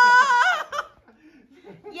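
A high-pitched shriek of laughter and cheering, held for about the first half-second, then it drops away to a lull before a high voice starts again near the end.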